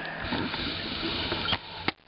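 Handling noise from a hand-held video camera being moved and reframed: a rustling scuffle, with two sharp clicks near the end.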